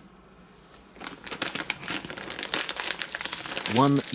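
Clear plastic packaging bag crinkling as it is handled, with dense, irregular crackles that start about a second in.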